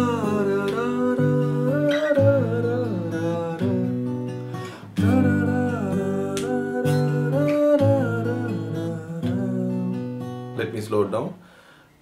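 Fingerpicked acoustic guitar: a G major chord arpeggiated string by string in the pattern 6-5-2-3-1, with a man singing the melody over it. A new phrase starts with a strong plucked note about five seconds in, and the playing fades out near the end.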